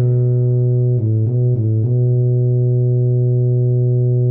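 Tuba playback of a low bass-clef melody: one held note, four quick notes about a second in, then a long held note.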